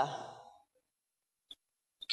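A spoken word trails off at the very start, then there is dead silence, broken only by one brief click about one and a half seconds in.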